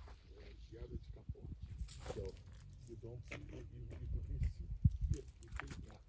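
Faint voices over a steady low rumble, with a few short clicks.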